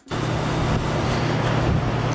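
Steady low hum with an even hiss over it, starting suddenly just as the music ends.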